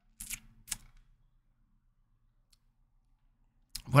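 Two short, sharp clicks about half a second apart in the first second, then a single faint tick a couple of seconds later.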